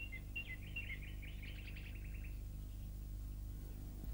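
Faint bird calls: short high chirps alternating between two pitches, running into a quicker series that stops a little past two seconds in, over a low steady hum.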